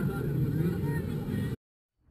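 Steady low rumbling noise from the Batwing Space Shot drop-tower ride, with faint voices over it, cutting off abruptly into silence about one and a half seconds in.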